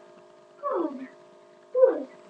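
Two short wordless vocal cries from a person, each about half a second long and sliding down in pitch, one near the middle and one at the end.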